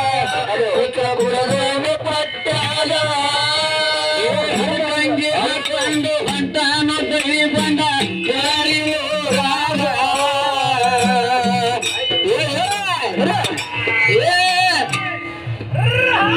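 A man singing a dollina pada, a Kannada folk devotional song, amplified through a microphone, with his voice sliding and wavering over accompaniment that keeps a steady beat.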